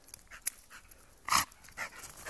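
A dog panting as it trots up with a frisbee in its mouth, in short noisy breaths, one much louder huff a little past halfway.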